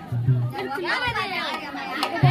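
Several voices speaking over each other, with the street-theatre troupe's music playing quietly beneath.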